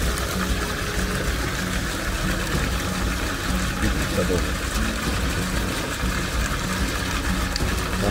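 Steady rush of water running into a fish pond, with a low steady hum beneath it.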